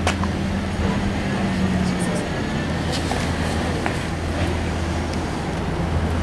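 A car engine idling with a steady low hum, with faint voices in the background.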